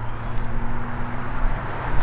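Outdoor background noise with a steady low hum.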